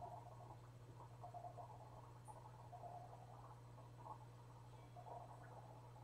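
Near silence: room tone with a steady low hum and faint, scattered small sounds.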